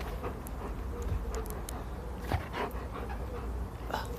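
A German Shepherd panting close to the microphone, with short irregular breaths. One soft thump comes a little past halfway.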